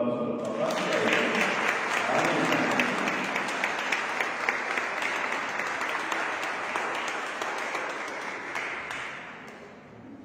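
Congregation applauding in a church, starting about half a second in just as a voice ends, running steadily for about eight seconds and dying away near the end.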